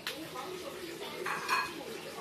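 Kitchen clatter of dishes and pots clinking, with a louder clink about one and a half seconds in. Faint voices are heard in the background.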